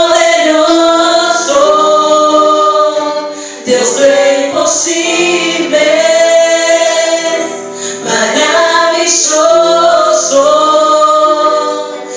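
Two women singing a Spanish-language Christian worship song into microphones, in phrases of long held notes that break briefly about three and a half and eight seconds in.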